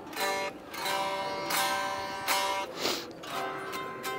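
Journey OE990 folding travel electric guitar being picked: a slow series of single notes and chords, each struck and left to ring, heard through the venue's main speakers from behind them.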